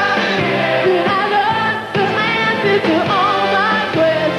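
Live 1980s pop-rock band with a woman singing lead and backing vocals, a steady drum beat and keyboards under the voices.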